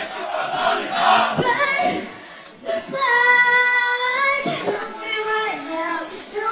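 Female group vocals sung live with the backing track stripped out, leaving bare voices. A long steady held note comes about three seconds in and lasts about a second and a half, then the singing moves on in shorter phrases.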